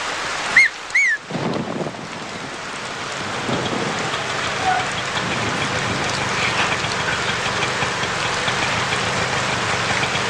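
Steady heavy rain falling on a street, with two short high-pitched chirps about half a second and a second in. An auto-rickshaw's small engine is heard under the rain as it draws up.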